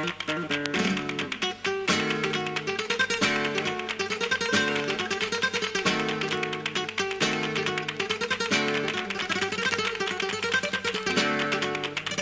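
Flamenco guitar playing alone, quick picked runs broken by sharp strummed chords every second or so.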